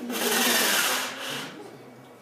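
Pull-down projection screen being drawn down off its wall-mounted roller: a loud rubbing rattle lasting about a second and a half, fading away in its last half second.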